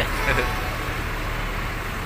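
Steady low rumble of idling bus engines with general traffic noise.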